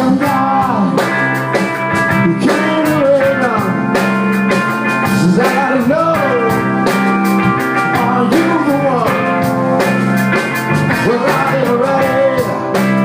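Live rock-blues band playing: a singer's melody over electric guitar, bass and drum kit with a steady beat.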